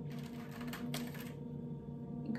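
Metal duckbill pin-curl clips clicking and rattling against each other and a small clear plastic box as they are picked out by hand: a few light, irregular clicks.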